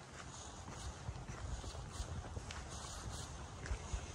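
Footsteps on a paved stone path at a walking pace, about two steps a second, over a low rumble.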